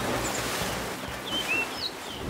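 Several short, high bird chirps scattered over a steady outdoor ambience hiss.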